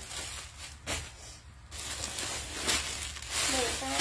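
Rustling of clothing and its plastic packaging as the garments are handled and folded, with a couple of soft knocks and a few spoken words near the end.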